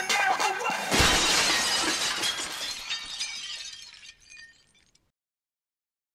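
Music breaks off in a sudden crash of shattering glass, an added sound effect whose tinkling fragments fade away over about four seconds.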